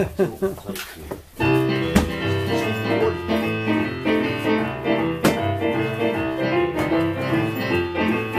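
A short laugh, then about a second and a half in, two digital pianos start a blues-boogie piano piece together, with a rolling bass line under chords and runs.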